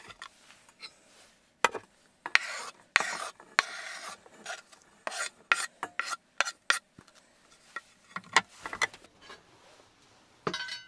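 Knife blade scraping grated onion across a wooden cutting board, then scraping it off the tipped board into a stainless steel pot. There is a longer scrape a few seconds in, followed by a quick run of sharp taps and scrapes.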